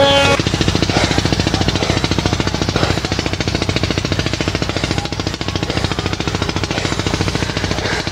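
A motor running steadily with rapid, even chugging pulses. Background sitar music cuts off just at the start.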